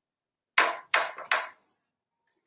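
Three short, rough rustling scrapes in quick succession, about 0.4 s apart, from hands handling things close to the microphone.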